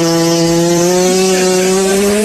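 A 'cat fart' comedy sound effect: one long, steady, drawn-out fart noise, rising slightly in pitch near the end.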